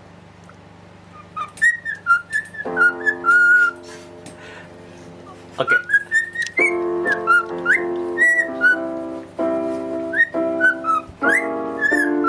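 A cockatiel whistling a tune in quick phrases of short, gliding notes, starting about a second and a half in. Sustained piano chords sound under and between the whistles.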